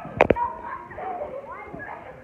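Children's voices and shouts during play, with two quick sharp thuds close together just after the start, a soccer ball being kicked.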